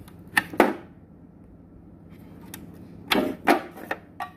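Handling noise: a few short, sharp clicks and knocks, two about half a second in and three more near the end, over a faint low hum.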